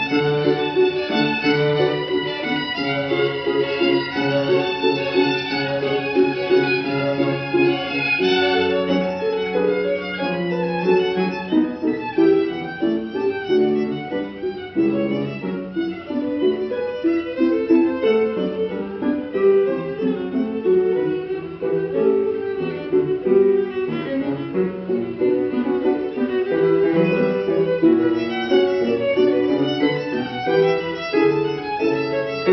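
Several violins playing a classical piece together, a continuous flow of bowed notes with no pauses.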